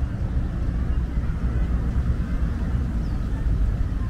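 Steady low rumble of outdoor urban background noise, with no distinct events.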